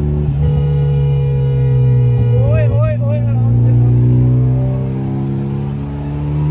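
The DC Avanti sports car's engine, a turbocharged four-cylinder, heard from inside the cabin while it drives at speed. Its drone holds steady, then climbs slowly in pitch as the car accelerates through the gear.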